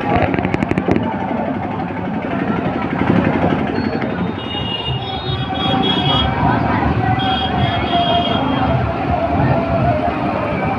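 Busy street noise: crowd voices and motorcycles and other vehicles running past, with a rapid rattle about half a second in.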